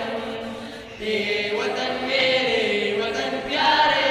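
A group of teenage boys singing a song together in unison, in long held phrases, with a new phrase starting about a second in and another near the end.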